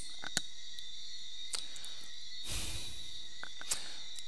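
Quiet room tone from a home recording setup: a steady faint high-pitched electrical whine with hiss, a few faint clicks, and a soft rush of noise about two and a half seconds in.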